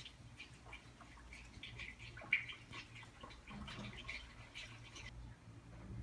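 Coolant being poured into a hand-held radiator hose, gurgling in short irregular bursts that stop about five seconds in.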